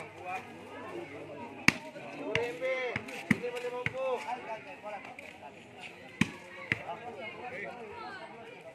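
Volleyball being hit during a rally: a series of sharp smacks, the loudest about a second and a half in, several more between two and four seconds, and two more between six and seven seconds, over the voices of players and onlookers.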